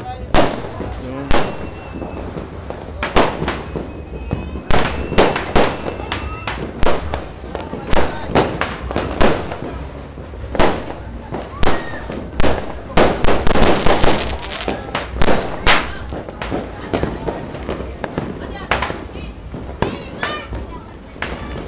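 Firecrackers and fireworks going off all around in dozens of sharp, loud bangs at irregular intervals, with a dense run of rapid crackling a little past the middle.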